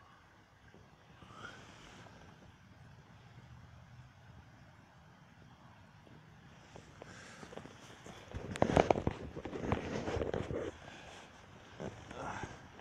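Faint, steady heavy rain. Then, a little past the middle, about two seconds of loud crackling and rumbling noise.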